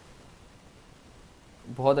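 Faint steady hiss of room tone, then a man starts speaking near the end.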